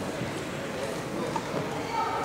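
Indistinct background chatter and general hubbub of a sports hall, steady and moderate, with no clear single event.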